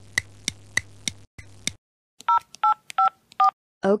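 Cartoon clock-ticking sound effect, sharp ticks about three a second over a low hum, stopping a little under two seconds in. Then four short two-tone phone keypad beeps, like dialing a number.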